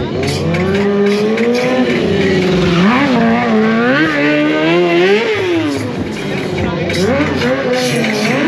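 Stunt motorcycle engine revving up and down again and again as the rider spins and slides the bike, with tyre squeal on the asphalt.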